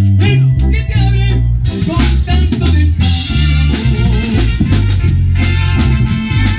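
Live band playing loudly: electric bass, keyboard and drum kit, with regular drum hits and a stretch of cymbal wash in the first half.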